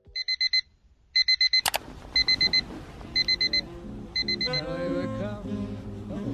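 Electronic alarm beeping: groups of four quick high-pitched beeps, one group each second, five groups in all. Music starts under it a little under two seconds in and carries on after the beeping stops.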